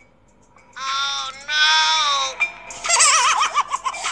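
High-pitched comic voice, likely a dubbed sound effect: two held cries, each dropping in pitch at its end, then a rapidly warbling, giggle-like sound about three seconds in.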